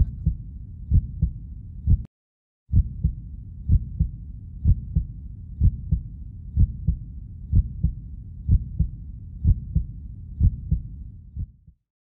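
Heartbeat sound effect: low paired lub-dub thumps, about one pair a second. It breaks off for about half a second roughly two seconds in, then carries on and fades out near the end.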